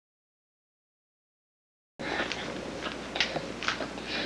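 Dead silence for about two seconds, then a home camcorder's steady hiss with short, sharp sucking and smacking noises from a baby feeding hard on a bottle of rice cereal.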